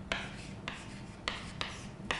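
Chalk writing on a chalkboard: about five short, scratchy strokes, each starting with a tap of the chalk against the board.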